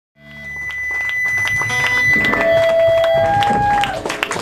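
Electric guitars on a club stage between songs: a few long steady notes ring out, a high one first, then two lower ones, over room noise with scattered clicks. The sound fades in just after the start.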